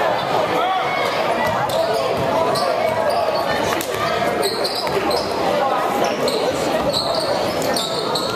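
A basketball being dribbled on a hardwood gym floor, with repeated short bounces, over steady crowd chatter echoing in a large hall.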